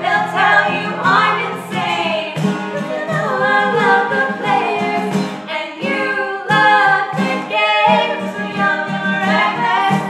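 Two female voices singing a pop song together over a strummed acoustic guitar, with a cajón beat coming in about two seconds in.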